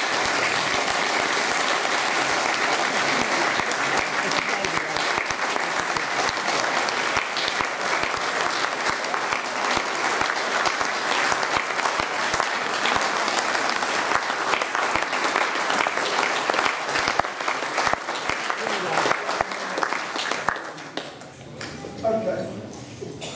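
Audience applauding: dense, sustained clapping from many people, dying away near the end.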